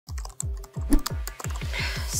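Rapid typing on a MacBook laptop keyboard, a fast run of key clicks, over background music with a steady low beat about four times a second.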